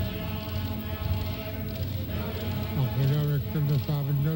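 Voices singing a traditional Eskimo dance song in a chant-like style, with long held notes, then a man's voice sliding up and down in pitch from about three seconds in.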